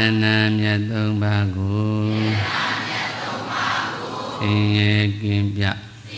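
Buddhist devotional chanting by deep male voices in a near-monotone. Two long held phrases are heard, one at the start and one just past the middle, with a looser murmur of many voices between them.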